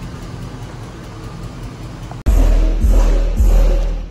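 Car audio subwoofers, two 12-inch subs in a ported box, playing music with very heavy, loud bass that comes in suddenly a little over halfway through and pulses in beats; before it, a steady low hum.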